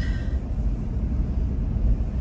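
A car driving slowly along a narrow paved lane: the steady low rumble of engine and tyre noise.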